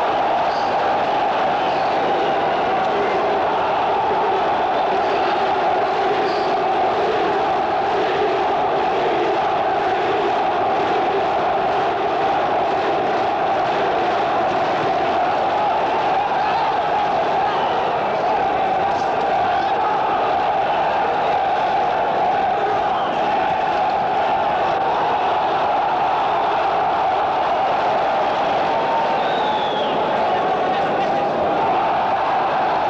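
Large indoor crowd of spectators at a boxing match: many voices shouting at once, a steady, unbroken din.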